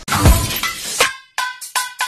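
An edited outro sting opens with a glass-shattering sound effect and a deep falling boom, then breaks into short, stuttering chopped hits of electronic music.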